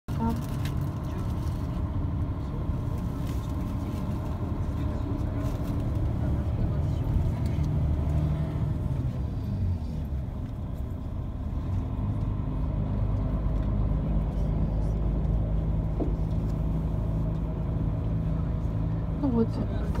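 Steady low engine and road rumble heard from inside a moving bus.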